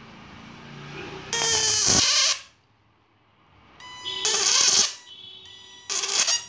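Homemade 12 V-to-high-voltage shock-fishing inverter arcing at its output wire: two loud, harsh buzzing bursts about a second each, with a thin steady whine between them and a third burst starting right at the end.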